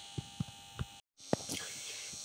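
Faint room tone with a steady electrical hum and a few small clicks, broken about a second in by a brief dropout to complete silence at an edit.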